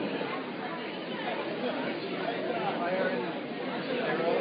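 Indistinct chatter of many people talking at once in a room, a steady babble with no single voice standing out.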